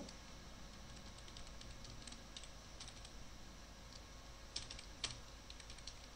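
Computer keyboard being typed at an irregular pace, soft keystrokes with a few sharper key presses about five seconds in.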